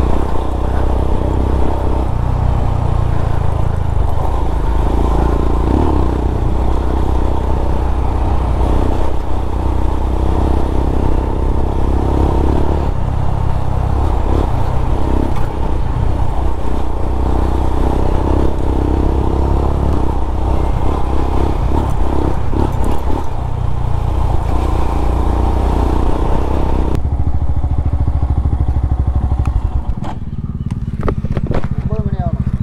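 Royal Enfield Himalayan's single-cylinder engine running steadily while the bike is ridden, with a continuous rushing noise over it. About three seconds before the end the rushing noise drops away and the engine carries on.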